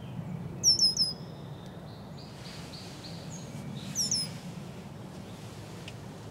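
A songbird calling: three quick, high, down-slurred notes under a second in, a fainter run of notes, then two more high notes about four seconds in, over a steady low background hum.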